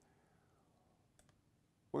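Quiet room tone with a few faint clicks a little past a second in.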